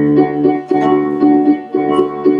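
Instrumental music: a keyboard plays repeated chords over a steady bass line in an even rhythm, the introduction to a song in a stage musical.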